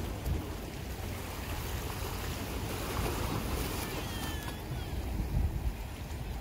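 Wind buffeting the microphone in uneven gusts over a steady rush of sea.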